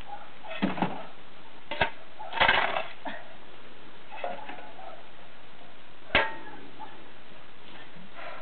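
A metal shovel blade striking and chopping at frozen, icy ground in irregular blows, about five sharp strikes, to break up the ice.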